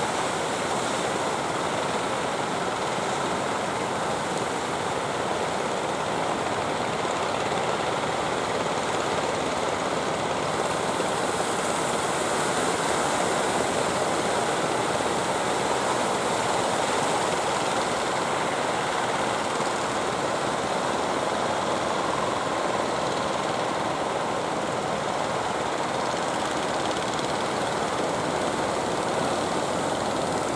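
Surf breaking steadily on the beach, a continuous wash of noise.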